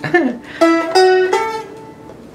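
Seagull Merlin, a dulcimer-style fretted string instrument, plucked in three single ringing notes of a melody with a sitar-like sound. A short sliding, falling-pitch sound comes just before the notes.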